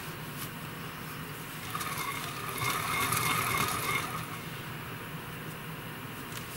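A faint machine-like whine of steady pitch swells up about two seconds in and fades away by about four seconds, over a steady low hum.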